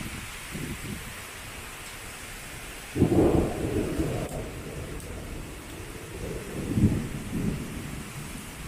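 Thunderstorm cloudburst: heavy rain hissing steadily, with a sudden loud crack of thunder about three seconds in that rumbles away over a second or so, and a smaller rumble near the end.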